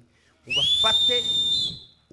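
A shrill, high whistling tone about half a second in. It slides up, holds for about a second, then steps slightly higher and fades, over faint voices.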